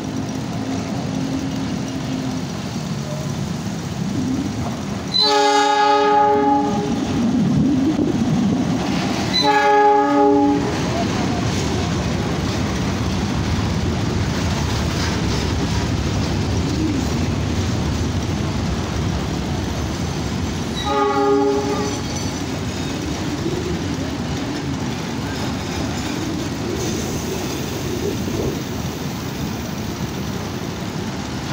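CC206 diesel locomotive sounding its horn three times: a longer blast about 5 seconds in, a shorter one about 9 seconds later, and a last one about 21 seconds in. Under the horn runs the steady rumble and clatter of a freight train of flat wagons loaded with rails rolling past.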